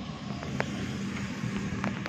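Steady low mechanical hum with a few faint short ticks.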